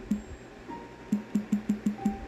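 Smartphone touchscreen keyboard tap sounds: a quick, irregular run of short tocks as letters are typed and deleted in a search box, about five in the last second.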